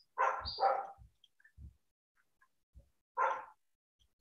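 A dog barking: two quick barks, then a single bark about three seconds later.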